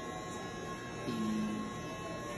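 A lull in conversation: a faint steady electrical hum, with a short held hesitation sound from a voice a little after a second in.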